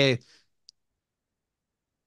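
A man's word trails off, then a single short, faint click about two-thirds of a second in; the rest is dead silence.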